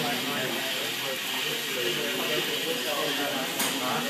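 Indistinct voices talking in the background over a steady hiss, with a single sharp click about three and a half seconds in.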